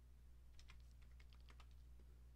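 Faint typing on a computer keyboard: a quick run of light key clicks over about a second, over a steady low electrical hum.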